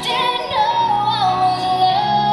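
Recorded song playing loudly, with a high singing voice holding long notes that glide from one pitch to the next over a full musical backing.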